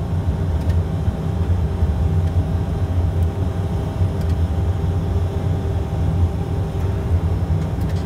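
Steady cruise-power cabin drone of a Pilatus PC-12 NG turboprop as reproduced by a flight simulator: a low hum of several even tones that holds unchanged throughout.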